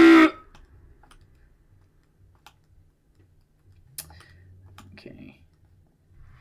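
Scattered single clicks of computer keyboard keys, a few seconds apart, with one sharper click about four seconds in. A loud shouted word ends just as the clicks begin.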